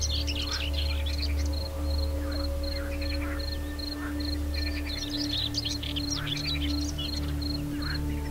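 Calm ambient music with a low steady drone and held tones, layered with birdsong: scattered high chirps and trills over a high pulsing call that repeats about four to five times a second.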